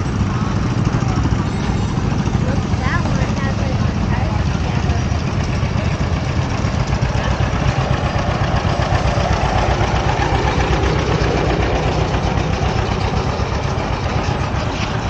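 An engine running steadily at low speed: a low, even rumble that holds throughout.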